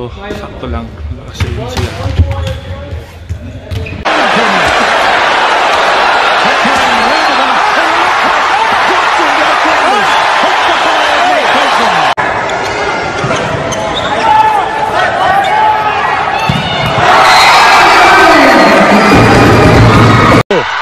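Volleyballs being hit and bouncing on a gym floor for about four seconds, with players' voices. Then a sudden switch to the loud, steady din of a large crowd with many shouting voices at a volleyball match, getting louder again near the end.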